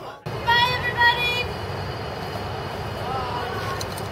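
Steady rumble of street traffic, with a few brief, indistinct voices over it about a second in and again near three seconds.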